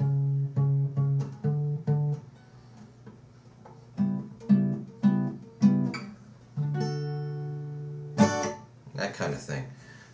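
Acoustic guitar played note by note, moving through a mode position of the D major scale: a run of plucked notes, a pause of about two seconds, a second run, then a held note and a strummed chord about eight seconds in.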